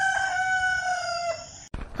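Rooster crowing: the tail of one long, held crow that falls slightly in pitch and cuts off shortly before the end.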